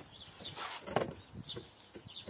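Bow saw being handled and set against a wooden board, with a light knock of the saw on the wood about a second in.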